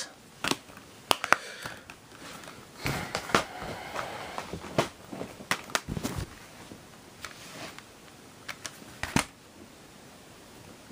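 Plastic disc cases being handled: scattered clicks, knocks and rustles as a Blu-ray eco case is worked and cases are set down, busiest in the middle of the stretch.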